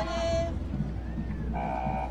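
Shooting-signal beep of an archery match: a steady electronic tone of about half a second near the end, marking the start of the archer's time to shoot. Before it, music cuts off about half a second in, over a constant low hum.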